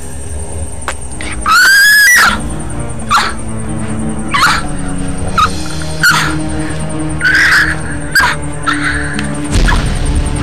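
Dark film score under a loud, high shriek about a second and a half in, rising and then falling. It is followed by a string of short, harsh bird calls like crow caws, about one a second.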